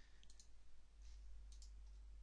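Near silence with a few faint computer mouse clicks, a pair about a quarter second in and another pair past halfway, over a low steady hum.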